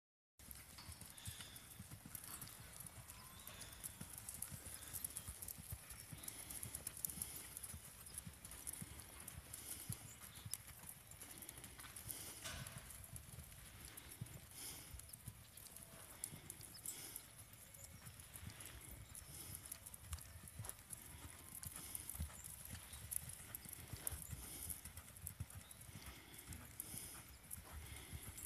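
Faint hoofbeats of a mare loping on arena sand, a run of soft, uneven thuds.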